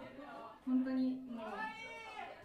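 A woman's voice talking in a drawn-out, sing-song way: one syllable held level about a third of the way in, then a longer call that slides up in pitch near the end.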